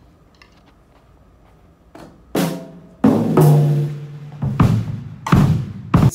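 Acoustic drum kit being played: after a quiet start, four or five loud drum hits begin about two seconds in, each leaving a low ringing tone.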